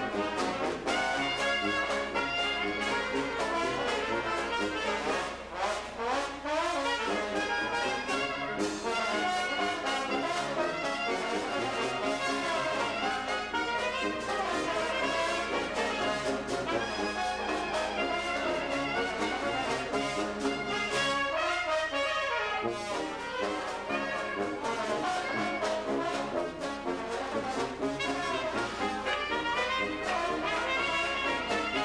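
Traditional jazz band playing a trombone rag: two trombones, clarinet and tuba, with rising slides about six seconds in and again past the middle.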